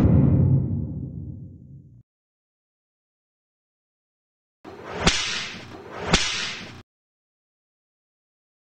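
Video-editing sound effects: a deep boom hit right at the start that dies away over about two seconds, then a gap of dead silence, then two whip-like swooshes about a second apart.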